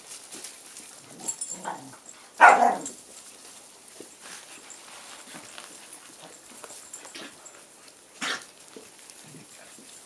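Six-week-old puppies playing, with one short puppy bark about two and a half seconds in, the loudest sound. A brief sharp sound comes about eight seconds in, over light crackly rustling.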